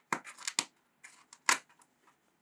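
A cat clawing and scrabbling at the cardboard floor of a box: a run of short, uneven scratchy rasps, with a loud one about one and a half seconds in.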